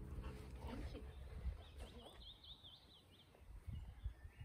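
Low rumble of wind on the microphone outdoors. Near the middle a small songbird sings a rapid, high, up-and-down trill for about a second. A faint short pitched sound comes in the first second.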